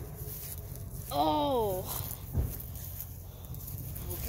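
A man's voice: one drawn-out exclamation like 'oh', falling in pitch, about a second in, with a single dull thump about halfway through. A steady low rumble runs underneath.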